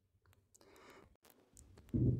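Near silence with a faint soft hiss and a few soft, isolated clicks.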